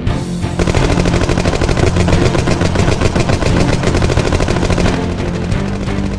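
Rapid, sustained automatic-rifle gunfire, a sound effect that starts about half a second in and runs for about five seconds, over soundtrack music with sustained low notes.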